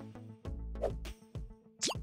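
Soft background music with a short pitched pop a little under a second in and a quick rising swoosh near the end, the sound effect of the quiz changing to the next question.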